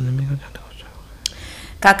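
Liturgical speech: a low voice ends just after the start, then a quiet stretch with a few faint clicks, and near the end a voice begins chanting the Hebrew prayer.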